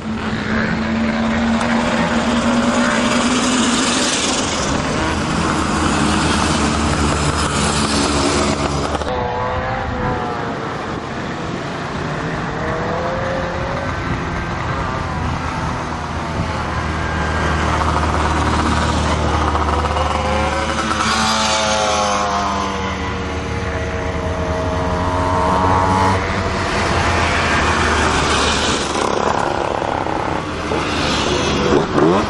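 Several Piaggio Ape three-wheelers racing up the road one after another, their small engines revving high. The engine note rises and falls in pitch several times as the vehicles come by.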